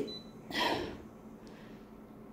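A short, noisy breath or snort through the nose about half a second in, just after a faint, brief high beep from a photocopier's touchscreen key press.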